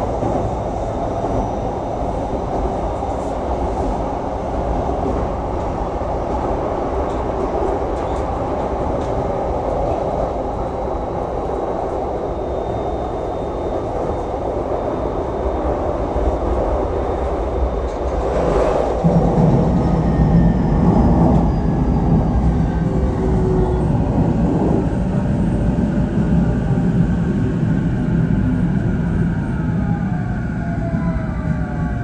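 Electric commuter train running, heard from inside the car: a steady rumble of wheels and track. About 19 seconds in the low rumble grows louder, and a thin motor whine slowly falls in pitch over the last several seconds.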